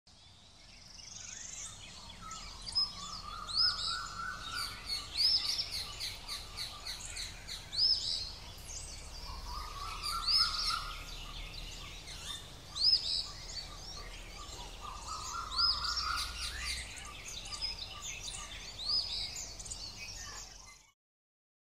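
Outdoor birdsong: many birds chirping and whistling over one another, with a lower, drawn-out call returning three times. It fades in over the first second or two.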